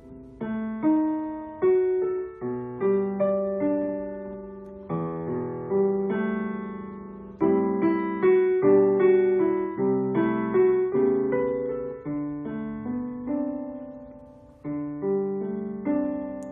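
Digital piano playing a slow two-handed passage: a right-hand melody in sixths over single left-hand notes. The notes and chords are struck about once a second or faster, and each is held and left to fade.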